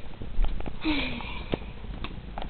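A person sniffing briefly close to the microphone about a second in, with a short falling hum of voice in it, among a few light knocks from the camera being handled.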